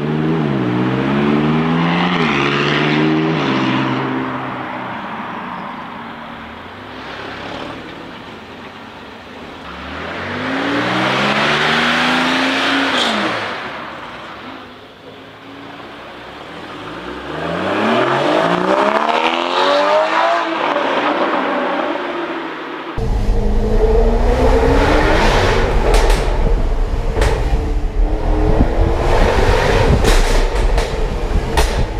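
Supercars accelerating away one after another, the first the McLaren 675LT's twin-turbo V8, each engine note climbing and dropping back at the upshifts. About 23 seconds in, this gives way abruptly to the steady engine and road rumble heard inside a moving car's cabin.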